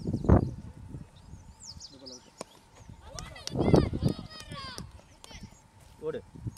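Calls and shouts from people at an open-air cricket match: a short shout just after the start, then a louder run of high, sliding calls about three to four and a half seconds in.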